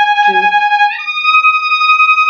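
Violin bowing a sustained note, then moving up to a higher held note about a second in.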